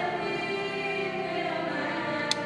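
Children's church choir singing held notes with instrumental accompaniment.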